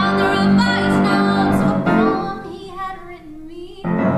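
A young woman singing a musical-theatre song with piano accompaniment. About halfway through the music drops to a quiet, held, slightly rising sung note, then comes back at full strength suddenly near the end.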